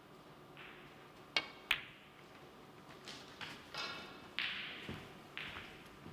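Snooker cue tip striking the cue ball with a sharp click, then a second sharp click a third of a second later as the cue ball hits the blue. Several softer knocks with a short hiss follow over the next few seconds.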